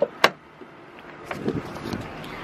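A sharp click about a quarter second in, then a faint low rumble.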